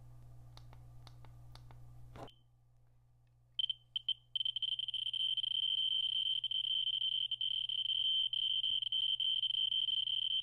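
A few faint clicks from a radiation survey meter, then, about three and a half seconds in, a second survey meter with an alpha-beta-gamma probe over uranium ore sounds its count audio. It starts in short stuttering bursts, then runs as a nearly continuous high-pitched tone that flickers slightly: counts arriving so fast that they merge, at about 80 times background.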